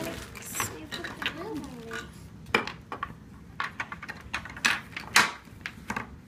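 Hard plastic toy race-car parts and clear plastic bolts clicking and clattering against each other and the tabletop as they are picked up and handled. It comes as a few separate sharp clicks, about a second apart, in the second half.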